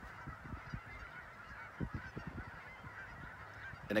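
A distant flock of geese honking, many overlapping calls in a continuous chatter, with a few low thumps on the microphone around the middle.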